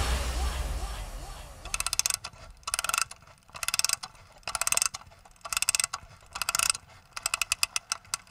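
A dance track's sound fades away, then short bursts of rapid mechanical clicking, like a ratchet, repeat about once a second. This is a sound effect opening the next track of an electronic dance mix.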